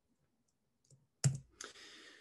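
Near silence broken about a second in by a single sharp click, followed by a short, faint breath drawn in.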